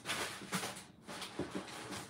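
Rustling and handling noise from rummaging in a cardboard shipping box and its packing, with a couple of soft knocks.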